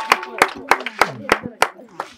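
Hand clapping: quick, sharp claps about five or six a second, with voices talking underneath.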